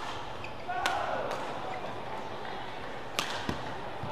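Badminton rally: several sharp racket strikes on the shuttlecock at uneven intervals, two of them close together near the end, over steady hall ambience.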